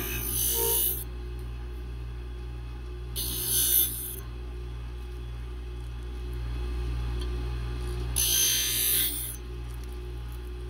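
A scissor sharpening machine runs with a steady hum while a scissor blade is drawn across its grinding wheel three times: at the start, about three seconds in, and about eight seconds in. Each pass is a hiss of metal grinding that lasts about a second.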